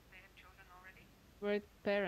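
Speech only: faint voices at first, then a nearby voice speaking loudly from about a second and a half in.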